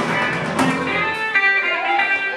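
Live band playing: electric guitar with bass and drums. About a second in, the bass and low end drop out, leaving guitar notes ringing.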